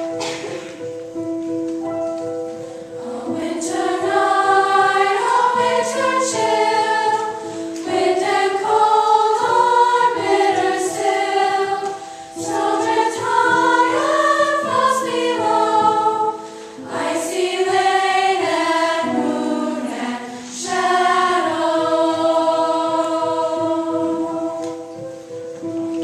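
Mixed choir of men's and teenage voices singing a slow choral piece in swelling and falling phrases. The voices enter about three seconds in over sustained held notes.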